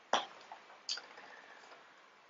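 Two short clicks about three-quarters of a second apart, with a fainter tap between them: cosmetic bottles and packaging being handled and set down.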